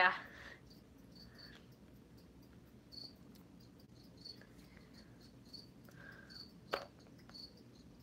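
Cricket chirping: short, high chirps repeating every half second to a second. A single sharp click sounds about three-quarters of the way through.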